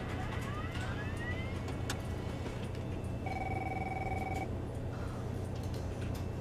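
Steady low hum of room tone. About three seconds in comes a single steady electronic beep lasting about a second, after a faint rising whistle near the start and a sharp click about two seconds in.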